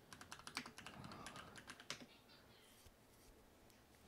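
Computer keyboard typing: a quick, faint run of keystrokes over about two seconds as a search term is typed in, then the typing stops.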